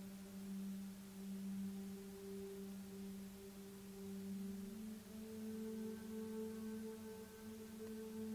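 Soft ambient background music: a steady, held low drone tone that steps up a little in pitch just past halfway, with fainter higher tones joining it.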